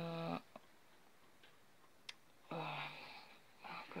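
A woman's brief drawn-out hesitation sound, then a breathy hum about two and a half seconds in, as she searches for a word; a faint click or two between them.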